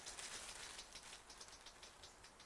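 Faint rustling and crinkling of a thin black plastic bag being handled, a string of short crackles.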